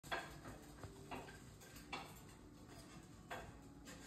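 Four light clinks and clicks of dishes and utensils being handled, spaced out over a quiet room.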